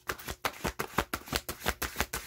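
A deck of tarot cards being shuffled by hand: a quick, uneven run of crisp card snaps and clicks, about five or six a second.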